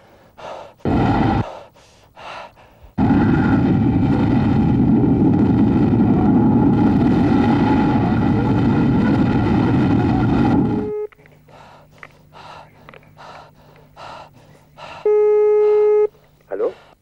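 Harsh distorted electronic noise in short bursts, then a loud sustained wall of distortion that cuts off suddenly about eleven seconds in. After it come soft rhythmic ticks over a low hum, and a steady synthesizer tone near the end.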